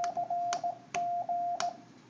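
Morse code sidetone from a Yaesu FT-950's built-in keyer, keyed from a homemade capacitive touch key: a steady beep of one pitch sent as a run of dashes and dots, stopping near the end.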